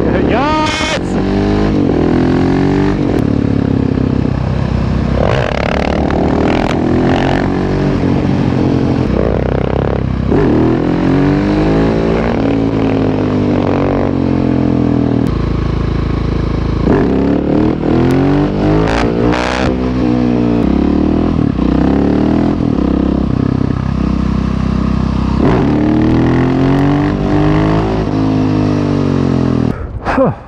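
Husqvarna 701 Supermoto's single-cylinder four-stroke engine heard on board, accelerating hard through the gears and easing off again several times, its note climbing in steps and then falling.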